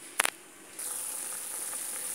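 A short clink of the aluminium pot lid, then, from just under a second in, a steady high-pitched sizzle of beef and cauliflower boiling in sauce in the pot.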